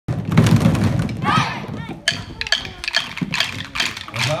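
Voices, then from about halfway a run of sharp knocks, about four a second, from drumsticks.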